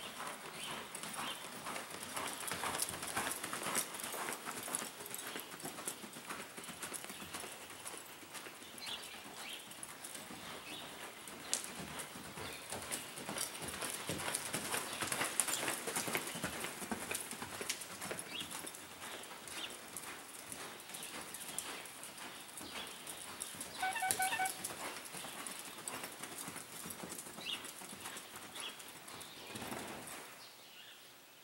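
Hoofbeats of a palomino horse being ridden at a lope on the sand floor of an indoor arena, a dense run of soft thuds and scuffs. About 24 s in there is a short run of high pulsed tones.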